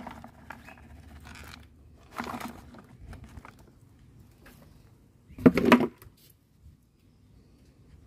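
Loose succulent leaves tipped from a plastic tray pattering onto potting soil, with brief rustles of handling. A louder half-second burst of rustling and clatter about five and a half seconds in.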